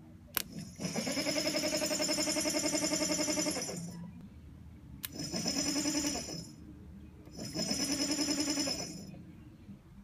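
A 6-volt tractor generator running as an electric motor with its belt off, humming steadily three times as a battery jumper cable is touched to its armature terminal. The first run lasts about three seconds and two shorter runs follow, each dying away as the cable is pulled off; a sharp click comes just before the first run. It spins freely under battery power, the sign of a good generator.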